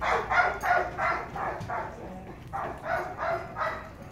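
A dog barking in quick runs of about three barks a second, pausing briefly about two seconds in before barking again.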